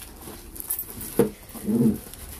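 Plastic wrapping rustling and handling noise as a power amplifier in its plastic bag is lifted out of its cardboard box, with a sharp knock about a second in and a short voice sound near the end.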